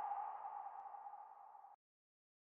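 Faint tail of a logo sound effect: a single ping-like tone rings down and fades out about a second and a half in.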